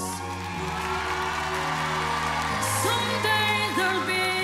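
A woman singing a slow ballad live over a sustained backing track, holding long notes with vibrato.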